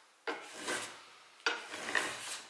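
Small metal block plane shaving the edge of a hardwood slat in two strokes, about a second apart, each starting sharply and trailing off.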